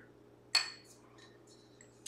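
A single sharp clink of glassware about half a second in, ringing briefly at a high pitch, followed by a few faint light taps.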